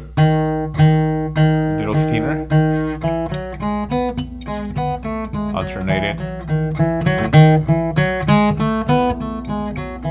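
Acoustic guitar played fingerstyle with free strokes, single notes plucked one at a time: first one low note repeated a few times, then a quicker line of single notes stepping up and down in pitch, about three a second.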